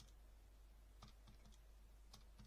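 Calculator keys being pressed: three faint, quick clicks about a second in, over quiet room tone.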